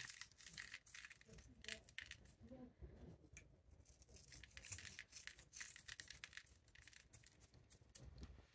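Faint, scattered dry crackling and ticking of sea salt flakes being crushed between the fingers and sprinkled onto wet watercolour paper.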